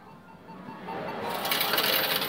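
A ticket vending machine whirring and rattling as it dispenses into its tray, getting louder about halfway through.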